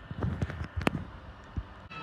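The TV sound drops out during a cable channel change, and a few short thumps and clicks sound in the gap, the sharpest a little under a second in and one more about a second later.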